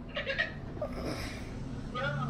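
Laughter: a short, high-pitched giggling burst near the start, then softer laughing sounds.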